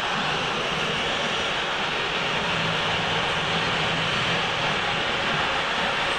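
Large stadium crowd making a steady roar of many voices.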